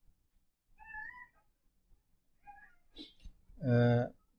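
Two faint, short meows from a cat, about a second in and again at about two and a half seconds, the first rising slightly in pitch. A man's voice begins near the end, louder than the meows.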